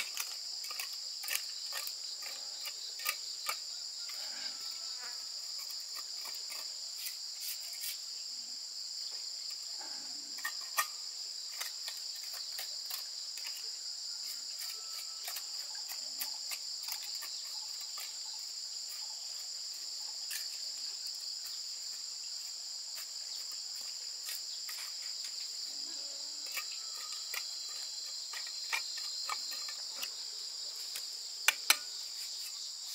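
Steady high-pitched insect chorus, with scattered light clicks and knocks from hand work in soil and concrete blocks. One louder knock comes about ten seconds in.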